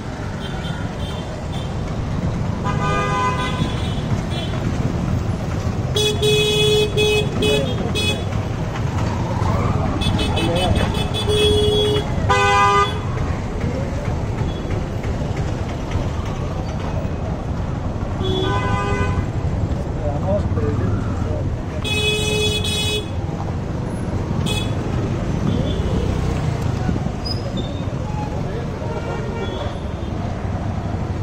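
Busy street traffic: engines of auto-rickshaws, scooters and cars running in slow, congested traffic. Vehicle horns honk again and again over it, some single toots and some quick runs of beeps, with several horns overlapping at times.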